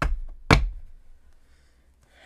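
Two sharp knocks on a wooden tabletop, about half a second apart.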